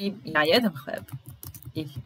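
Typing on a computer keyboard: a quick run of key clicks in the second half, right after a short spoken phrase.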